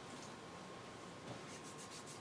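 Faint room hiss, then a quick run of soft clicks near the end from a computer mouse being clicked.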